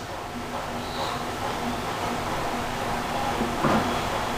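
Steady low mechanical hum and room noise, even in level throughout, with faint steady tones and no sharp knocks.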